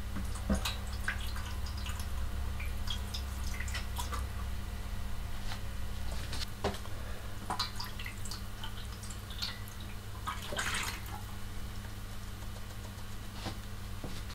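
Water poured from a plastic measuring jug into a stainless steel tray, splashing and trickling in uneven bursts as the empty bath is filled, over a steady low hum.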